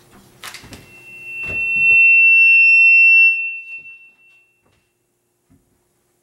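Two knocks as the acoustic guitar is handled and set down, then a loud, steady high-pitched feedback squeal that swells up, holds, and dies away about four seconds in.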